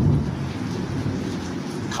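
A steady low rumble of background noise, without any speech.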